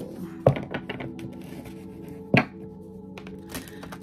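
Soft background music with steady held tones, over the handling of a tarot deck: two sharp thunks, about half a second in and again just before halfway, with lighter clicks of cards being shuffled.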